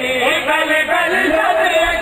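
A man's voice chanting in a sustained, melodic line through a microphone and public address system.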